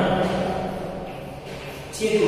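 A man's voice speaking in a large, echoing room, trailing off about half a second in, followed by a quieter pause with only faint room noise.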